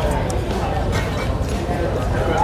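Restaurant dining-room din: overlapping voices of other diners at a steady level, with no clear foreground speaker.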